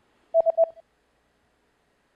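Three short electronic beeps in quick succession, all on the same mid pitch, about half a second in: an edited-in prompt cue marking the pause for the learner to answer.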